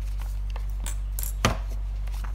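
Paper being handled on a desk: an exam sheet and a draft-paper booklet shifted into place with light rustles and clicks, and one sharp knock about one and a half seconds in as the booklet is set down. A steady low electrical hum runs underneath.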